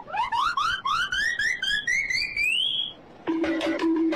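Rapid string of short upward-chirping electronic tones, about six a second, climbing steadily in pitch for about three seconds and then stopping. A moment later a pulsing, beeping synth tone pattern starts.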